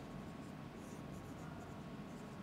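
Dry-erase marker writing on a whiteboard: a series of faint, short strokes.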